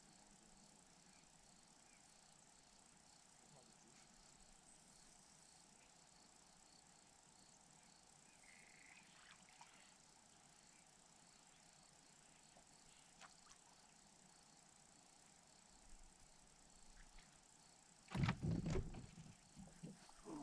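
Near silence: faint outdoor room tone with a few faint short chirps. Near the end, a sudden burst of loud knocks and rustling close to the microphone.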